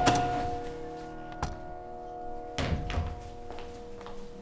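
Soft background music of held notes plays while a room door opens, with a sharp click about a second and a half in and a dull thump near three seconds.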